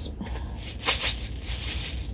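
Something held in the hands being shaken: a short sharp rattling rustle about a second in, with fainter rustles near the end, over a low steady hum.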